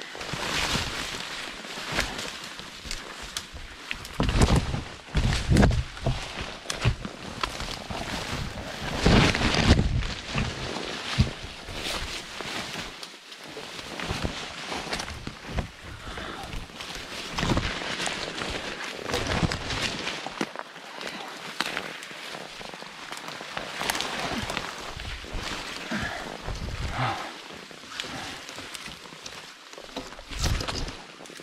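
Branches, leaves and twigs rustling and snapping as a hiker forces his way on foot through dense brush and young spruce, with footsteps, in irregular crashing bursts. The loudest bursts, with low thumps, come about five and nine seconds in.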